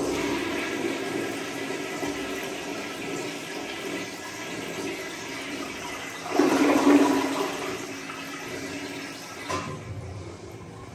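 1936 tan Standard compact toilet flushing: steady rushing water swirling in the bowl, a louder surge about six seconds in, then the flow easing as the bowl refills.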